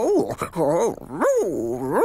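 A cartoon dog's voice whining and whimpering in a run of slow rising-and-falling, questioning tones.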